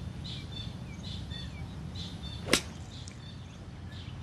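Golf iron striking the ball off rough grass: one sharp crack of contact about two and a half seconds in. A bird chirps repeatedly in the background.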